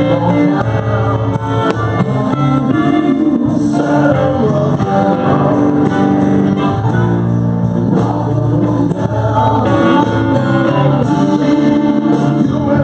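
Live blues-rock band playing: a harmonica cupped to a microphone over electric guitar, bass guitar and drums.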